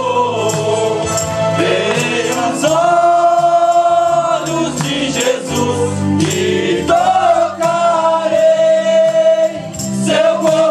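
A men's vocal group sings a gospel hymn together, holding long notes, over an accompaniment with a steady percussion beat.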